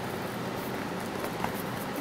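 Steady background hiss with a few faint taps and rustles as a small cardboard CD mailer is handled.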